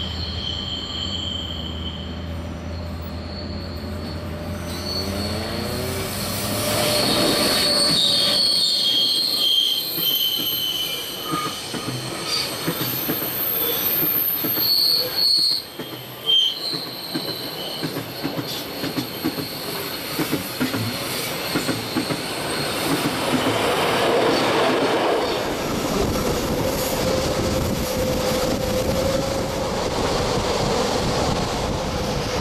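Rhaetian Railway electric train passing close on a curve. The wheels click over the track and the flanges squeal high against the curving rail, with a rising whine about four to six seconds in.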